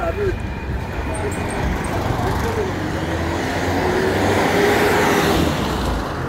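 Street traffic, with a motor vehicle approaching and passing close by, loudest about four to five seconds in.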